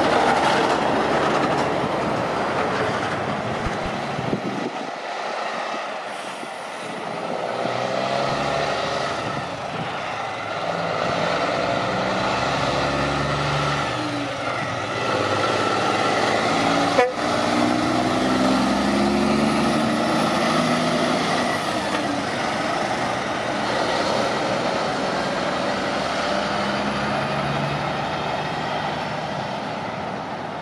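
Heavy road-train truck diesel engines running and driving by, the engine note shifting up and down in pitch, with one sharp click about halfway through.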